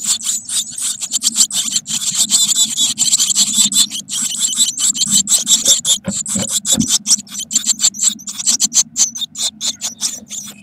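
Eurasian blue tit nestlings begging in the nest box, a dense, rapid high-pitched chatter as a parent feeds them, thinning out near the end as the brood settles.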